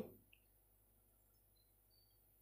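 Near silence: faint room tone, after a spoken word cuts off right at the start.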